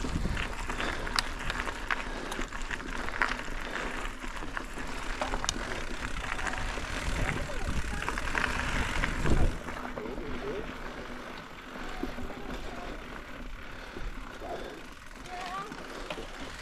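Mountain bike riding over a dirt and rock singletrack trail: knobby tyres rolling, with scattered clicks and knocks from the bike rattling over bumps. It grows quieter about nine seconds in.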